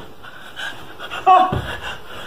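A person panting, with one loud, short voiced gasp about a second and a quarter in.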